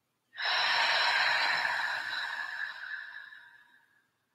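One long, deep exhale, a breathy sigh of a three-part yogic breath. It starts suddenly and fades out over about three seconds.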